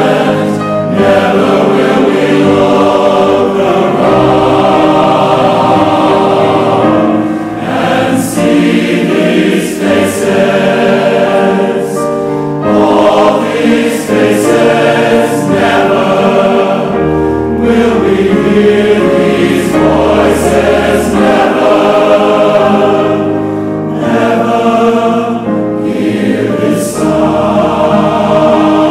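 Large choir of men's and women's voices singing a slow English ballad in harmony, with grand piano accompaniment.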